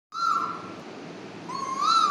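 A girl's vocal imitation of an Asian koel's call: two clear, whistle-like calls, the first held briefly, the second rising in pitch near the end.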